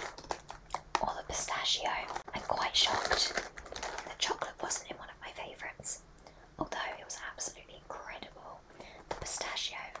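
A woman whispering close to the microphone, breathy and in short phrases, with a few soft taps from a cardboard box being handled.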